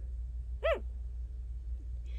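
A sleeping puppy gives one short, high whimper, rising and then falling in pitch, a little over half a second in: the kind of sound puppies make while dreaming. A low steady hum runs underneath.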